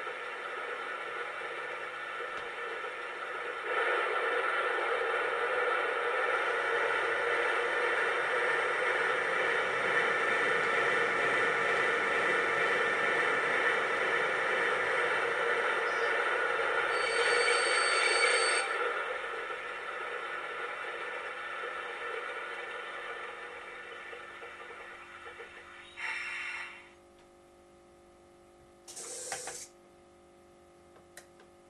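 Digital sound module of an LGB 2044 model electric locomotive playing electric-locomotive running sounds. A steady humming drive sound with a whine builds up a few seconds in, is loudest for a moment about two-thirds of the way through, then fades out. Two short bursts of sound follow near the end.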